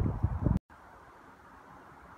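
Wind noise on the microphone, with irregular low gusts, stops abruptly at a cut about half a second in. After it there is only a faint, steady background hiss.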